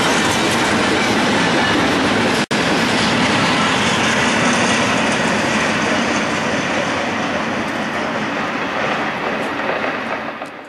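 Double-stack intermodal freight cars rolling past on the rails: a steady, loud noise of wheels on track, easing off slightly near the end. It breaks off for an instant about two and a half seconds in.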